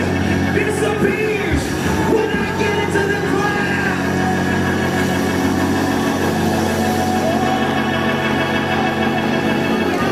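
Live gospel worship music with steady held chords. A man's voice sings over them into a microphone for the first few seconds, after which the held chords carry on alone.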